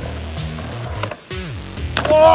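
Skateboard wheels rolling and carving on a concrete bowl, with a sharp clack about a second in and another near the end, under a music track.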